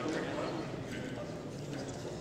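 Murmur of many overlapping, indistinct voices as members talk among themselves in a large parliamentary chamber, with a few light knocks or footfalls mixed in.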